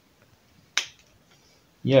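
A single sharp plastic click as a part of a Masters of the Universe action figure snaps into place on its joint peg.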